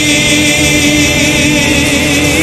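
Live Argentine folk song: singing held on one long steady note over guitar and band accompaniment.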